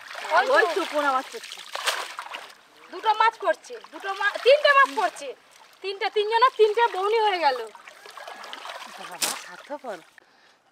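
Water splashing and trickling in the first couple of seconds as a wet cast net is pulled from the pond onto the bank, under women's voices talking. A sharp click comes about two seconds in and another near the end.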